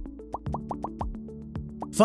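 Electronic intro music: a held synth chord under a string of short rising plop sounds and fast clicks.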